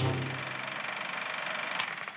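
Closing jingle music. A final chord is struck at the start and held, slowly fading, with one more short hit near the end.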